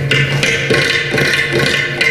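Mrudangam and ghatam playing a fast, dense run of Carnatic drum strokes together over a steady low drone, in Khanda Triputa tala.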